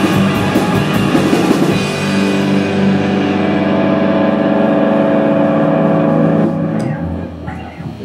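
Live rock band of electric guitars, bass and drum kit playing with drum hits, then holding a chord that rings on steadily from about two seconds in and dies away in the last second or so.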